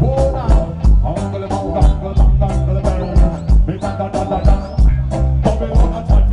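Live reggae band playing a steady beat on drum kit, bass, electric guitar and keyboard, with a vocalist singing into a microphone over it through the stage PA.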